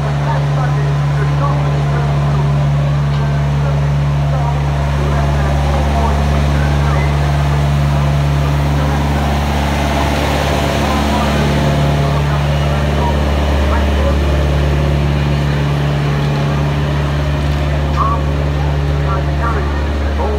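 Diesel engine of a one-third scale Flying Scotsman replica miniature locomotive idling at a steady low drone, with people chatting in the background.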